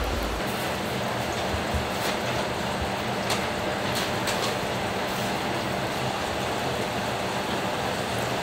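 Steady kitchen background noise with a few soft taps of a knife on a cutting board as fish is sliced.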